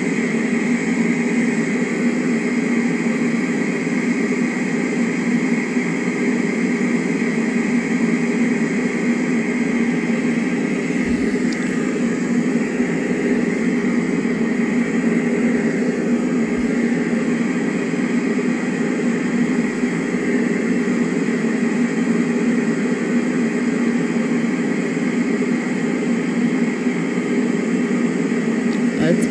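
White noise machine running: a steady, unchanging whoosh of noise.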